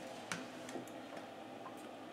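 A few faint, light clicks and taps as a wire and soldering iron are handled at an RCA plug on the workbench.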